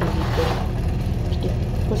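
A steady low mechanical rumble at an even level, with a short swish about half a second in.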